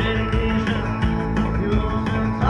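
Rock band playing live and loud, with guitar and a steady drum beat and a singing voice.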